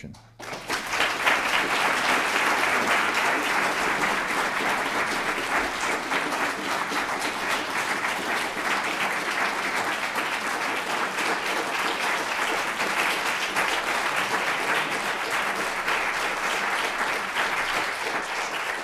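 Audience applauding, a dense, steady patter of many hands clapping that starts about half a second in and keeps an even level throughout.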